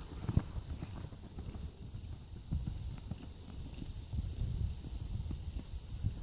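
Two-year-old horse's hooves thudding softly on sand while it lopes under a rider.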